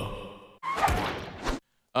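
The sung show jingle fades out, followed by a short breathy rush of noise like a sigh into a microphone. The sound then cuts off suddenly to dead silence.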